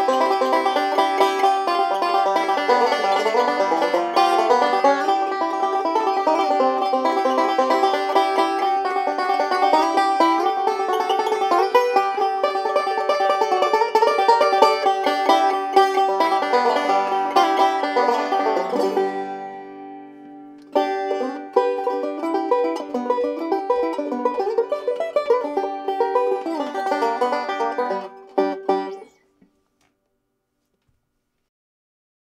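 Late-1920s Gibson Mastertone conversion five-string banjo, with a 40-hole archtop tone ring and resonator, picked in a fast, steady stream of notes. About two-thirds of the way through, the playing fades away for a moment, then starts again sharply and ends with a last few notes ringing out near the end.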